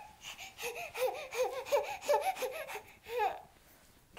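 Baby babbling: a quick run of short, high-pitched syllables, each rising and falling, for about three seconds before it stops.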